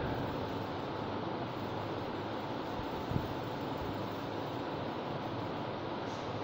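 Steady classroom room noise, an even hiss with a faint steady tone in it, and one faint short tap about three seconds in.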